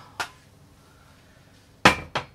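Glass bottles knocked on a countertop as they are moved: a light click just after the start, then a much louder, sharp knock near the end.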